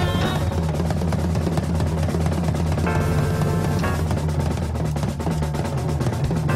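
Jazz-fusion drum solo on a large drum kit: fast, dense snare and tom rolls with bass drum and cymbals, over a sustained low bass note, with a brief higher ringing tone about three seconds in.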